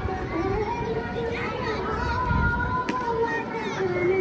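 Outdoor crowd ambience with children's voices and shouts, a long held pitched note in the background, and wind rumbling on the microphone.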